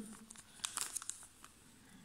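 Small clear plastic zip bag crinkling faintly in the fingers as it is handled, a scatter of light crackles mostly in the first second.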